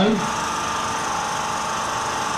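A steady machine-like drone with a faint, even high whine, holding at one level without change.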